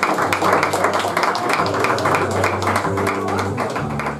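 Double bass and ukulele playing together: the bass holds long low notes that change every second or two, under quick strummed chords.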